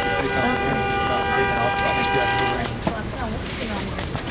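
A vehicle horn holding one long, steady note that cuts off about two and a half seconds in, over street chatter.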